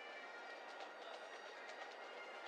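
Pipe band bagpipes playing outdoors, the steady drones sounding under the chanter melody, heard at some distance. A few sharp taps come through about halfway in.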